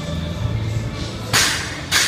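A barbell with rubber bumper plates dropped from overhead onto rubber gym flooring: a sharp slap about a second and a half in, and a second impact near the end as it bounces. Background music with a steady beat underneath.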